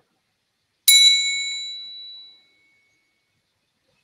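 A metal triangle struck once about a second in, giving a bright, high ring that fades away over about a second and a half.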